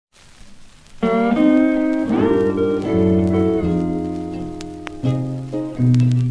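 Instrumental intro of a Hawaiian song played from a 45 rpm record: Hawaiian steel guitar chords that start about a second in, with a sliding rise in pitch about two seconds in. Record surface noise comes before the music, and scattered clicks of surface crackle run through it.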